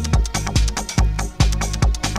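Electronic dance music from a DJ mix: a steady, fast kick drum with a deep bass line and busy hi-hats.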